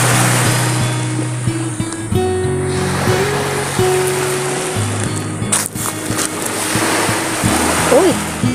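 Background music of sustained bass and melody notes changing in steps, over a steady rushing noise, with a couple of short clicks a little past the middle.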